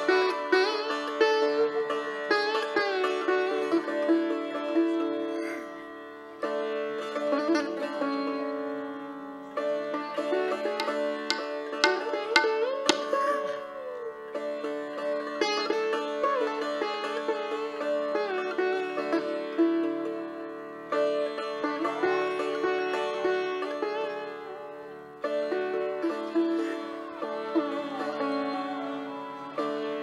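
Sitar playing a slow melodic passage over its ringing drone strings, sliding between notes. It goes in phrases of a few seconds, each starting with a plucked stroke and fading away.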